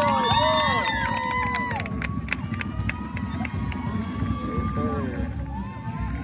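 Voices calling and shouting across an outdoor football field, with drawn-out calls near the start and again about four seconds in, over a steady low rumble. A run of light clicks falls about one to three seconds in.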